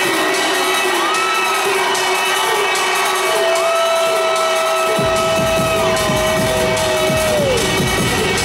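Live electronic music in an arena, recorded from the audience with crowd cheering. Long held and sliding notes sound over a steady drone, and a bass-heavy beat comes in about five seconds in.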